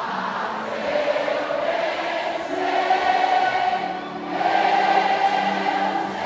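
Many voices singing a gospel song together in three long held phrases, with no drumbeat.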